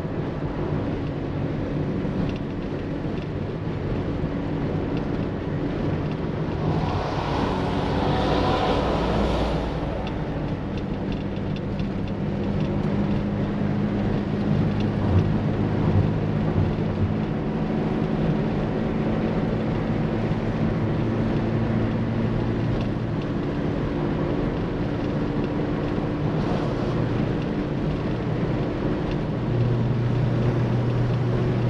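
Moskvich-403's M-412 four-cylinder engine, running on a newly fitted Weber carburetor, pulling steadily at highway speed, heard from inside the cabin over road and wind noise. A brief louder rush of noise comes about seven to nine seconds in, and a few light knocks about fifteen seconds in.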